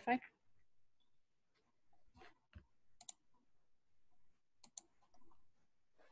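Faint clicking at a computer: a few scattered clicks, two of them quick double clicks about a second and a half apart.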